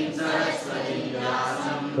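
A group of devotees chanting a line of a Sanskrit invocation prayer together, many voices blended in unison, answering the leader's line.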